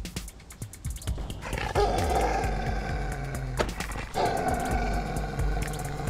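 A dog growling in long, drawn-out stretches from about a second and a half in, with a short break in the middle, over background music with sharp percussive ticks.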